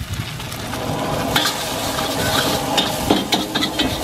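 Char kuey teow noodles sizzling in a hot wok, with a metal ladle and spatula scraping and clinking against the wok as the noodles are stirred and tossed. The clinks come thicker near the end.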